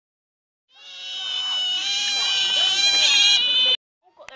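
A group of Asian small-clawed otters calling together while waiting to be fed: many high-pitched squeaks and chirps overlapping. The sound fades in about a second in and cuts off suddenly near the end.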